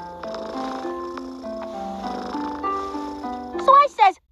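Gentle cartoon score of held, stepping notes with a low purr from a cartoon cat underneath. Near the end a loud voice with sliding pitch cuts in.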